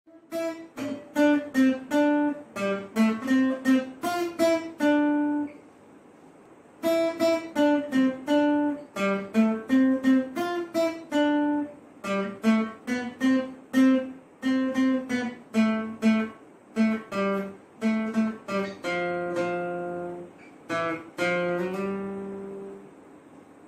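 Acoustic guitar playing a melody picked one note at a time, with a break of about a second and a half around a quarter of the way in. Near the end a lower note is left ringing for a second or so before the picking resumes.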